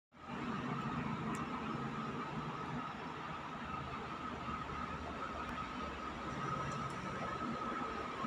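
Steady background hum with a constant high whine above it, unchanging throughout.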